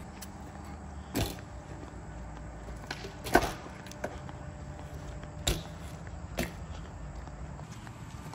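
Footsteps on concrete while walking sideways: a handful of sharp knocks a second or two apart, the loudest about three and a half seconds in, over a low steady rumble.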